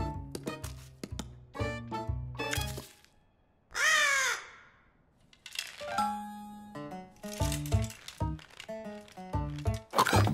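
Background music of short notes pauses, then a cartoon crow gives one loud caw about four seconds in, and the music picks up again after a short silence.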